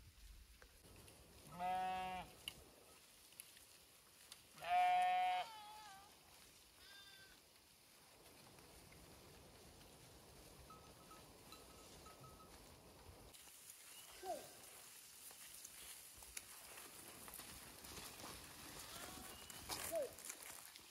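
Sheep bleating: two loud, wavering bleats about two and five seconds in, then a fainter bleat a little later, with the flock otherwise quiet.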